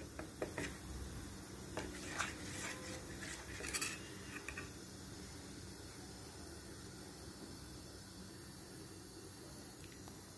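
Steel spoon stirring thick batter in a stainless-steel bowl: faint scrapes and a few light clinks of spoon against bowl, which stop about halfway through.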